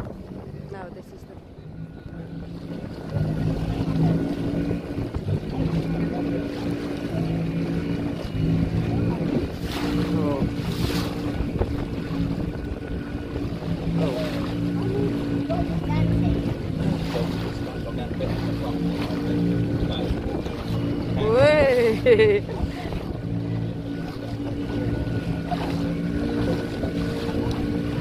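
Small motorboat's engine running steadily under way, with water rushing past the hull and wind on the microphone. The engine gets louder about three seconds in. A brief voice is heard about two-thirds of the way through.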